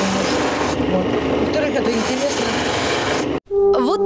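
A selenite carving pressed against a spinning wheel on an electric motor: a steady, rasping grind, with a woman's voice faint beneath it. The grinding breaks off suddenly near the end, and music begins.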